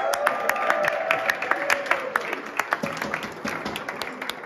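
A group of people clapping and applauding, many irregular hand claps at once. Over the first two seconds or so, voices hold one long note that slowly falls and fades, and the clapping thins out toward the end.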